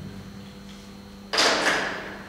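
Whiteboard marker dragged quickly across the board, one short scratchy stroke with two peaks about a second and a third in, over a faint steady hum.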